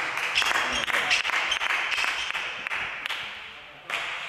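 Clapping from spectators and team-mates in a sports hall, a dense patter of claps that gradually dies away. A second short burst of claps comes near the end.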